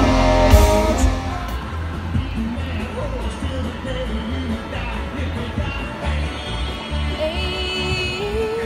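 A live rock band plays loudly through a phone microphone: a held chord with drum and cymbal hits that ends about a second in. After that, quieter music carries on with low, uneven thumps.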